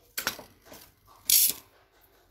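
Utility knife blade slicing through the edge of a styrofoam cake base: a few light clicks and handling noises, then one short, sharp rasp a little past a second in.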